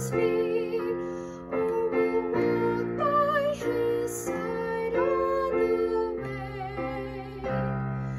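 A woman singing a hymn with vibrato, accompanying herself with chords on a Yamaha digital piano.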